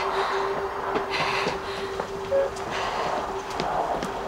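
Background score in a quiet stretch: a single low tone held steadily, with a faint hiss of room or outdoor ambience underneath.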